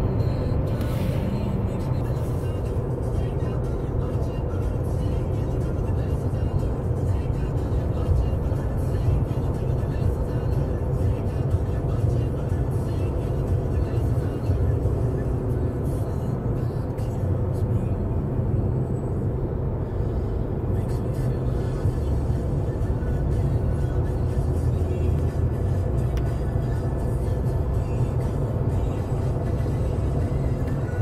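Steady low rumble of a 4x4 driving on a snow-covered highway, heard from inside the cab: engine and tyre noise without change.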